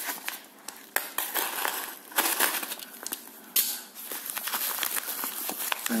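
Snap-off utility knife cutting open a padded paper mailer, with the paper crinkling and rustling as it is handled and a few sharper crackles along the way.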